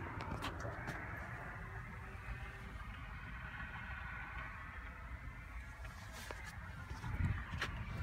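Low, steady background rumble with a few faint clicks and no speech.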